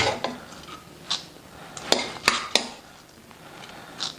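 Steel spoon scooping roasted sunflower seeds from a pan into a bowl: about five short scrapes and clinks of metal on the pan and bowl, three of them close together in the middle, with the seeds rattling as they drop.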